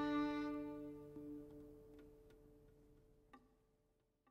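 The string band's final chord, with the violin on top over cello and bass, held and slowly dying away. A few faint clicks come near the end, the clearest a little after three seconds in.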